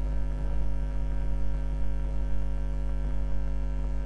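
Steady electrical mains hum: a low buzz with a row of overtones above it.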